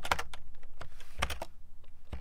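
Typing on a computer keyboard: irregular key clicks, a quick run near the start and a few more about a second and a quarter in.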